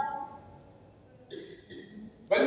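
A pause in a man's speech: his voice trails off on a rising pitch at the start, then there is a quiet stretch of room sound with a faint brief sound late on.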